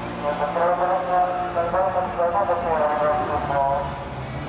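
An amplified voice carries over the venue's sound system, with several held, wavering notes.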